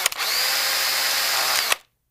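Digital glitch sound effect for a logo intro: a dense burst of static with a steady high whine running through it, broken by sharp clicks at the start and cutting off suddenly near the end.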